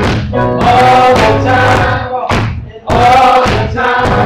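Live worship song: a man singing into a microphone over keyboard accompaniment, with a short break between phrases about two and a half seconds in.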